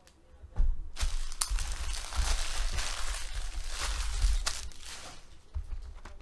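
Foil trading-card pack wrappers being gathered up and crumpled off the table: a long stretch of crinkling with sharp crackles and dull bumps, dying away near the end.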